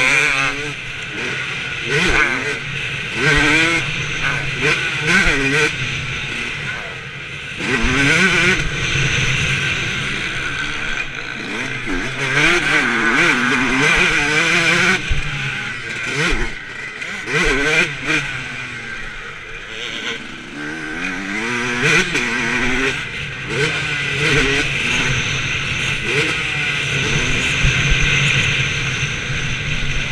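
Motocross dirt bike engine revving hard, its note climbing and dropping again and again as the rider accelerates, shifts and backs off around a dirt track.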